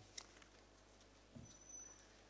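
Near silence: room tone with a few faint clicks near the start, a soft knock late on, and a thin faint high tone near the end.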